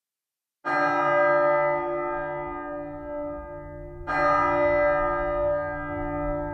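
A large church bell struck twice, about three and a half seconds apart, each stroke ringing on with a low hum and fading slowly.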